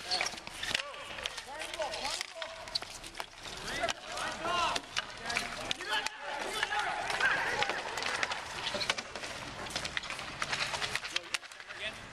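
Street hockey game play: indistinct shouts and calls from players, over repeated sharp clacks of sticks hitting the ball and the asphalt, with running footsteps.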